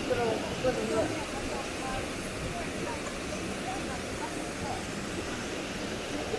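Steady rushing of a waterfall, with faint voices talking over it now and then.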